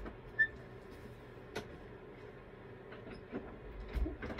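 A steady low hum, with a short high beep about half a second in and a few light clicks and knocks later on.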